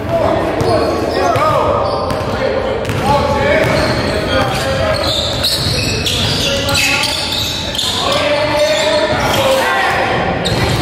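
A basketball being dribbled on a hardwood gym floor, mixed with players' voices, echoing in a large hall.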